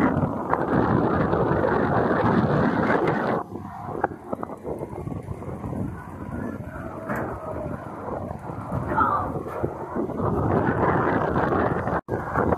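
Spinning wild-mouse coaster car running along its steel track, with wind rushing over the microphone. The noise is loud for the first three seconds or so, drops off suddenly, stays quieter through the middle, and swells again near the end.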